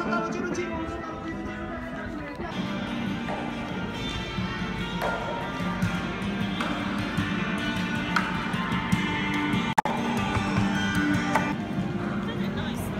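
Music led by a plucked acoustic guitar.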